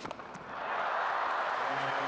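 A single sharp tennis ball strike right at the start, then a crowd breaking into applause about half a second in, which swells and holds steady as the point ends.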